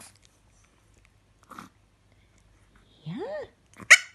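Chihuahua making small mouth and lip-licking noises, then one short, sharp yip near the end, the loudest sound, as it is coaxed to 'talk'.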